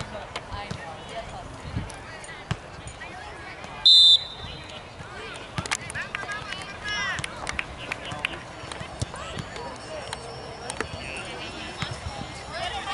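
A referee's whistle gives one short, sharp blast about four seconds in, the kind that restarts play on a free kick. Spectators' and players' shouts and voices carry across the field around it.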